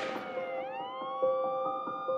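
Siren wailing as a sound effect in the intro of a rap track: its pitch slides down, then rises again about half a second in and levels off, over a steady backing tone.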